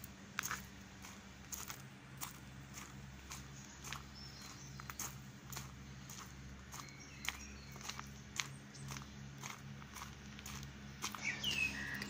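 Footsteps on a dirt and gravel path, about two steps a second, with a few faint bird chirps.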